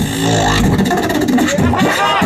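Beatboxer performing into a handheld microphone: a sustained, buzzing bass note held for the first part, with few drum hits, then a higher pitched sound gliding up and down near the end.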